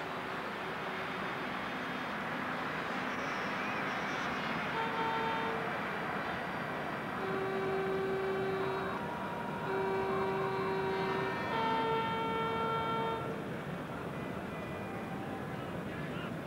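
Stadium crowd noise with fans' horns sounding a string of long held notes at several pitches through the middle stretch.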